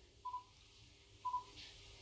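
Two short, faint beeps at the same pitch about a second apart: key-press beeps of an Icom ID-52 handheld D-STAR transceiver as its buttons are pushed.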